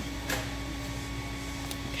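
Steady background hum of a large store's ventilation, with a brief rustle about a third of a second in.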